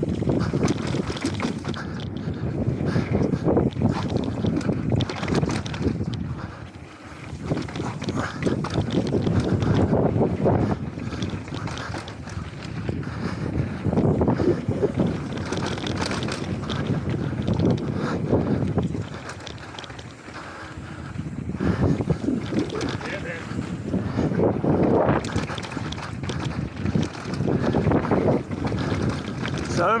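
Wind buffeting an action camera's microphone as a mountain bike descends a dusty dirt flow trail at speed, with tyres rolling over dirt and loose rock and the bike rattling. The noise swells and eases, dipping briefly twice, about a quarter of the way in and again about two thirds in.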